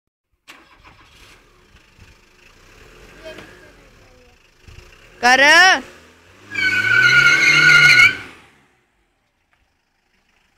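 A Tata Indigo's engine is revved once for about a second and a half, its pitch rising then falling, with a high wavering squeal over it. Just before, a man shouts a name.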